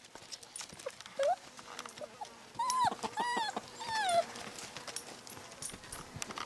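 Australian Shepherd-mix puppy yelping, about four short high cries in a row, as an older dog plays too roughly with it. Light scuffling clicks sound around the cries.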